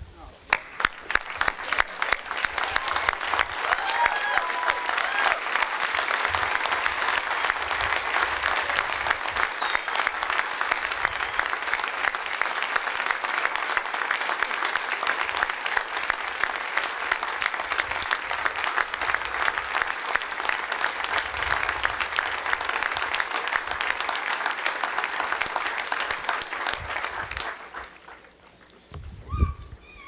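Sustained applause from a large audience, a standing ovation, that dies away near the end.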